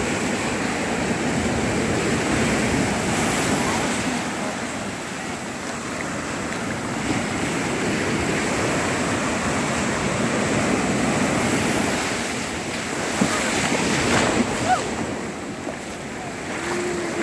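Sea surf breaking close by and washing up over sand and around rocks, the rush of water swelling and ebbing with each wave.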